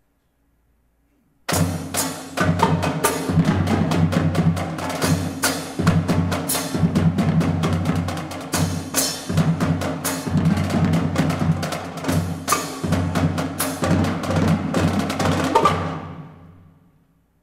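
Live drum section (snare drum, marching bass drum and kit) playing a loud, fast rhythmic break over a low bass line. It comes in sharply about a second and a half in after near silence, and stops near the end with a short ringing decay.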